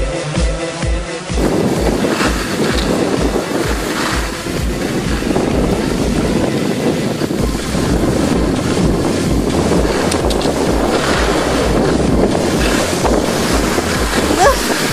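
Dance-pop music with a steady bass beat, joined about a second in by a loud, rushing wind noise on the camera's microphone as it moves down a ski slope. The beat carries on under the wind.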